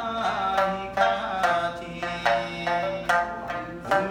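A man singing a slow song while plucking a small long-necked string instrument, with sharp plucked notes under the wavering sung line.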